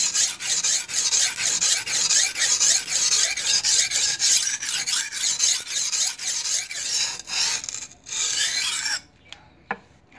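A leaf-spring-steel knife blade rasps in rapid back-and-forth strokes, several a second, across a wet Diamond-brand (ตราเพชร) grade A whetstone. The stone bites the steel well and leaves no slurry of its own. The strokes stop abruptly about nine seconds in, and a few light clicks follow.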